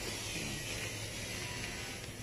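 Steady outdoor background noise: a faint even hiss over a low rumble, with no distinct event.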